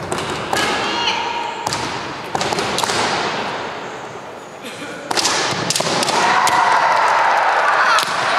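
Kendo bout: sharp knocks of bamboo shinai and thuds of bare feet stamping on a wooden floor, with high shouted kiai. From about five seconds in, loud sustained shouting.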